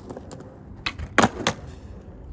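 Skateboard wheels rolling on concrete, then three sharp clacks of the board about a second in, the middle one the loudest: the tail pop and landing of an attempted half cab.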